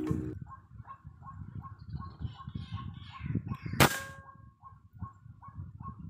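A single sharp shot from a scoped hunting rifle about four seconds in, the loudest sound, with a brief metallic ring after it. The shot hits its target. Short repeated calls run behind it, about three a second.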